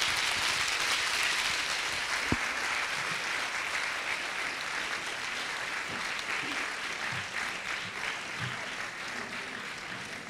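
Audience applauding in a lecture hall, a steady clatter of many hands that slowly tapers off. A single sharp knock rings out a little over two seconds in.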